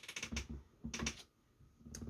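A few light clicks and taps of a plastic action figure being handled on a tabletop, in the first second or so.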